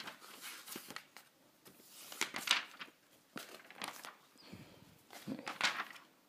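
Paper instruction booklet being handled and its pages turned: a run of irregular rustles and crinkles, busiest near the end.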